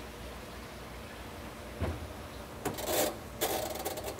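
Top-loading washing machine's control dial being turned by hand: a few faint scrapes, then a dense run of rasping clicks near the end, over a steady low hum.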